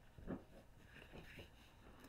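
Near silence, with a few faint short scrapes of a felt-tip marker drawing around fingers on paper.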